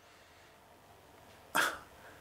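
A pause of near silence, then about a second and a half in one short breathy huff from the man at the microphone.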